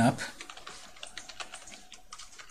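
Typing on a computer keyboard: a quick, uneven run of key clicks as a line of HTML is entered.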